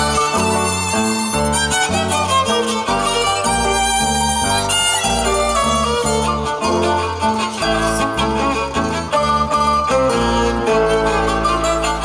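Live chamber music: a violin plays the melody over a bass line plucked on a bass ukulele, which gives the trio a deep bass part. The low notes are held and change about once a second under the violin line.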